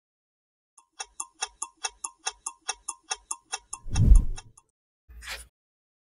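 Clock-ticking sound effect, a fast regular tick at about five a second for nearly four seconds. It ends in a loud, deep whoosh about four seconds in, the loudest sound here, followed a second later by a brief swish.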